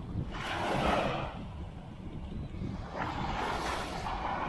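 Small surf washing up onto a sandy beach, the rushing noise swelling twice, about half a second in and again near the end, with wind on the microphone.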